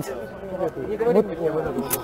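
Voices of several people talking quietly in the background, with a short click near the end.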